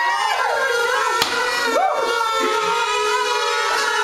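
Several kazoos buzzing together in held notes, some swooping up and down in pitch, with a single sharp click about a second in.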